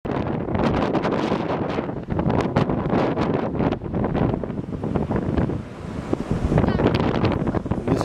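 Wind gusting hard against the microphone, with the wash of surf breaking on rocks underneath.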